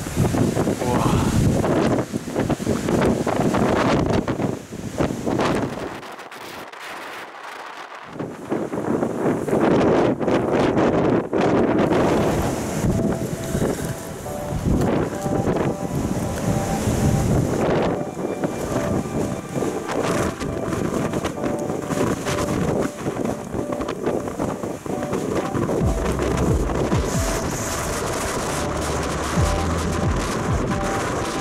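Strong gusting wind buffeting the microphone on an exposed mountain summit, a dense roar that eases briefly about six seconds in.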